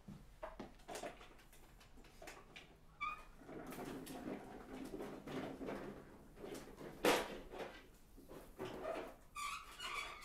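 Clatter and knocks as a homemade Tesla coil is lifted and moved away, with brief squeaks and a sharp knock about seven seconds in.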